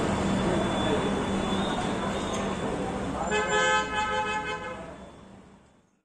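A horn honks for about a second, about three seconds in, over steady background noise with a low hum. The sound fades out at the end.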